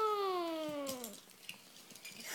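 A small child's voice holding one long note that slides down in pitch and fades out a little over a second in.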